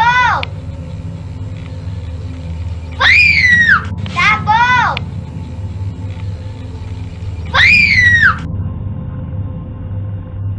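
A young girl's voice making very high-pitched cries that rise and then fall in pitch: a short one right at the start, then three longer ones about three, four and seven and a half seconds in. A low steady drone runs underneath.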